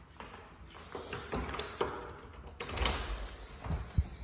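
A few light clicks and knocks of handling and steps, then an interior door being unlatched and opened, with a sharp latch click near the end.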